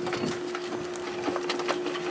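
A few light knocks and rattles from a stainless steel kitchen compost pail being opened and tipped, food scraps sliding out onto a compost pile, over a steady low hum.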